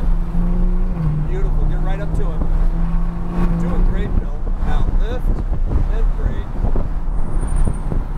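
Porsche GT3's flat-six engine pulling under throttle, heard from inside the cabin over road and wind noise. A steady low engine note holds for the first few seconds.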